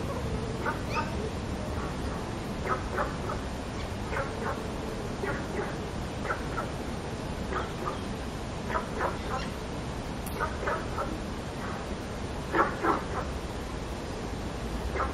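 Yellow-crested cockatoo giving short clucking calls in quick pairs and triplets, repeating about once a second and loudest near the end, over a steady low hum.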